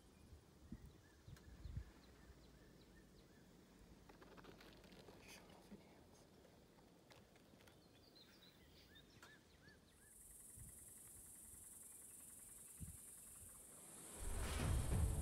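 Near silence: faint outdoor ambience with a few soft clicks and small chirps, and a steady high-pitched hiss that starts about ten seconds in.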